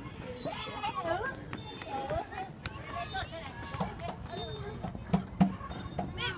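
Young children's voices talking and calling. Two short thumps come close together about five seconds in.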